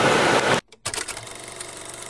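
Steady hiss of a car's cabin with the engine idling and the ventilation blowing, cut off abruptly about half a second in. After a brief silence, a faint steady hum follows.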